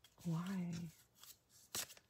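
A tarot deck being shuffled by hand, with one sharp flick of the cards near the end.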